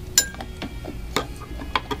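A metal spoon clinks once against a stemmed beer glass and rings briefly as lactic acid is stirred into the beer. A few lighter clicks follow, about half a second apart.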